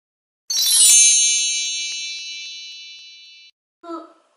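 A bright chime sound effect: a quick downward run of high bell-like tones that rings on and fades over about three seconds, then cuts off. A brief snatch of a voice follows near the end.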